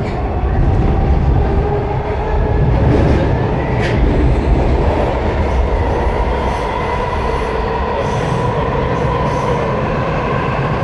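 Washington Metro railcar running between stations, heard from inside the car: a loud, steady rumble of wheels on track with a steady whine over it, and a brief sharp squeak about four seconds in.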